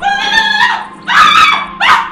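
A person's high-pitched wailing cries of pain and distress after a gunshot, three drawn-out wails in quick succession.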